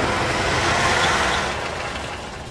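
Road traffic noise: car and motorbike engines running in a jammed street, fading toward the end.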